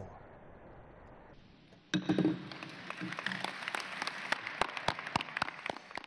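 Faint steady background noise, then about two seconds in an audience starts applauding, many hands clapping.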